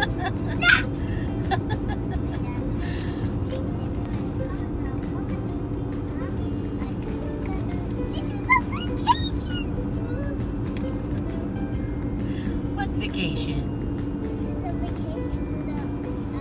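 Steady road and engine noise inside a moving car's cabin. A brief laugh comes just after the start, and two short, high-pitched vocal squeals come a little past halfway.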